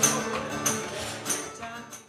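Closing bars of a small acoustic band: tambourine struck about once every two-thirds of a second over acoustic guitar, the music fading out at the end.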